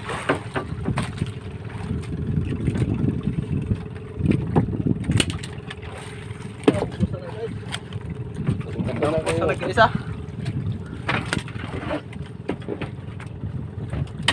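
Small outrigger fishing boat's engine running steadily, with scattered sharp knocks as a freshly caught skipjack tuna and the fishing gear are handled in the boat.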